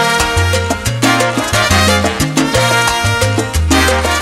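Instrumental passage of a salsa song: a bass line moving under pitched instruments and percussion with a steady beat, without singing.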